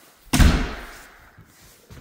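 Interior door banging once as it is pushed open, about a third of a second in, with a short fading echo.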